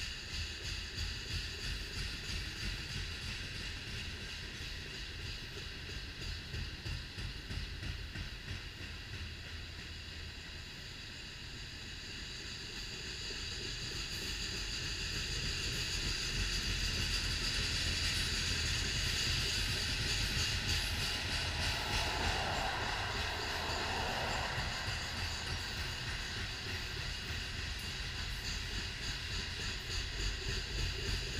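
BNSF freight train of covered hopper cars rolling past: a continuous rumble of steel wheels on rail with a steady high ringing above it. It grows louder around the middle.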